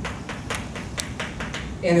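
Chalk writing on a blackboard: a few sharp taps, the clearest about half a second and one second in.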